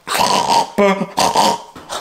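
A man's voice making rough, pig-like grunts, two of them, with a short "oh" between.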